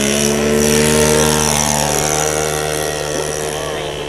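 Small engine of a radio-controlled model autogyro running at high throttle through its takeoff run and lift-off. It is a steady engine note whose pitch dips slightly as it passes, loudest about a second in.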